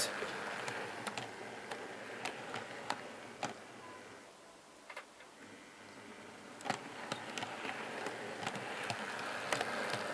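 An OO gauge model Pacer two-car unit running on the layout's track, with a steady running noise and irregular small ticks from the wheels on the rails. It fades away about halfway through and grows louder again near the end as the unit comes back.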